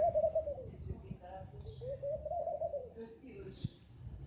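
Laughing dove cooing: two long coos that rise and fall in pitch, one at the start and one about two seconds in, over a low rumble.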